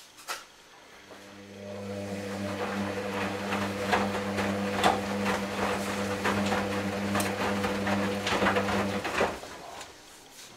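Hoover DynamicNext washing machine's drum motor starting about a second in and turning the drum with a steady hum, while the wet laundry tumbles and splashes in the drum. The motor stops abruptly near the end: a wash-phase tumble.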